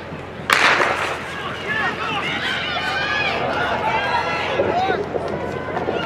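A starter's pistol fires once about half a second in, the start signal for a sprint relay, with a short echo after the shot. Spectators then shout and cheer.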